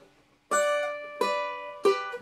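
Cavaquinho strummed: three chords about two-thirds of a second apart after a brief silence, each left ringing and fading, the last one the loudest.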